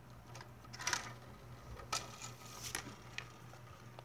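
Faint, scattered light clicks and rattles of plastic LEGO pieces being handled, about five or six small taps spread across a few seconds.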